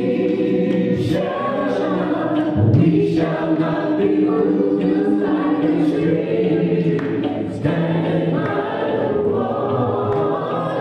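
A choir of mixed voices singing a slow song in long held notes, the pitch moving every second or two.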